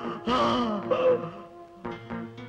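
A man wailing in anguish, with two drawn-out cries in the first second, over film score music with long held notes.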